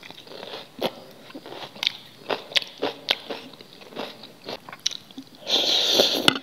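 Close-miked chewing of raw carrot: a string of sharp crunches. Near the end comes a loud slurp of instant noodles, lasting about half a second.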